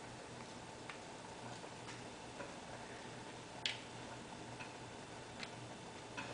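Quiet room with about six faint, irregularly spaced light clicks and taps, the loudest a little past halfway: a small paintbrush tapping against an egg and a plastic paint tray.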